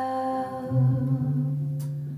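Live female vocal and guitar duo: the singer's held note fades away, and a low sustained note carries the short gap between sung lines.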